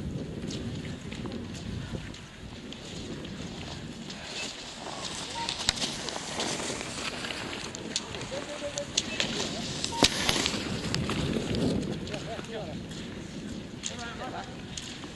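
Faint, indistinct voices of people standing by a cross-country ski course, with scraping and a few sharp clicks from a skier's skis and poles on packed snow as the skier approaches, loudest about ten seconds in.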